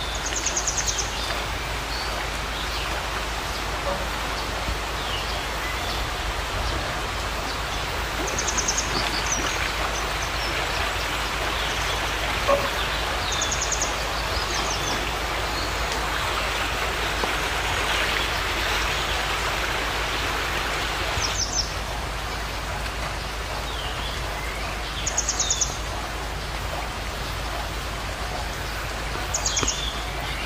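Steady rushing of flowing river water, with a bird giving short, rapid high trills about six times, roughly every four to five seconds, and a few fainter chirps.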